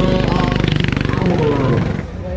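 Go-kart engine running close by at low pit-lane speed, a rapid, even pulsing that drops away near the end.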